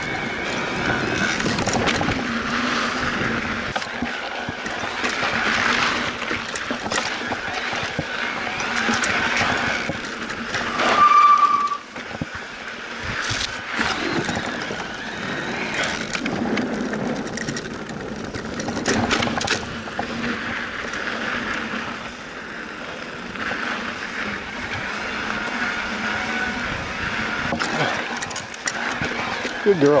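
Electric mountain bike ridden along a dirt trail and across a wooden ladder bridge: continuous riding noise of tyres rolling over the wooden slats and dirt, with scattered knocks. A brief, loud, high steady tone sounds about eleven seconds in.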